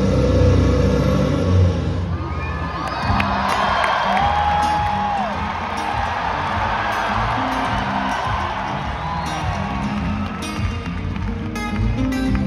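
A large arena crowd cheering, whooping and whistling, swelling about three seconds in, over low music.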